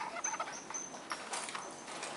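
Dry-erase marker writing on a whiteboard: several short high squeaks mixed with scratchy pen strokes as letters are drawn.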